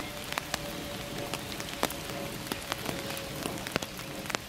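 Light rain falling on open water: a steady hiss with scattered sharp plinks of single drops.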